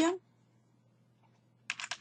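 Computer keyboard keys being typed: a quick run of keystrokes starts near the end, after a short quiet stretch.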